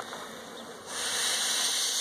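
A puff from a beekeeper's bellows smoker: a loud hiss of air and smoke starting about a second in and lasting over a second, blown over the bees to drive them down into the hive.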